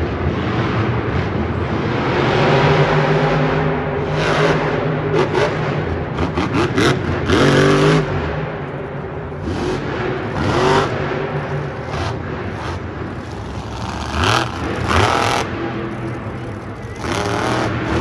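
Monster truck's supercharged V8 engine revving hard in repeated bursts, its pitch rising with each throttle blip, over steady arena noise.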